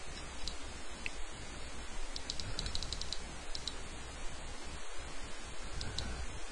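Computer mouse clicking: scattered short clicks with a quick run of them about two and a half to three seconds in, over a steady faint hiss.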